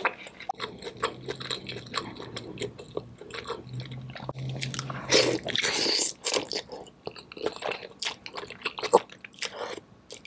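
Close-miked wet chewing, lip smacking and mouth clicks of someone eating sauce-drenched seafood boil, with a louder slurp from a spoon about five to six seconds in.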